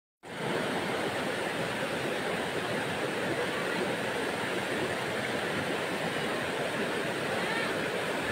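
Steady rush of a shallow river running over rocks.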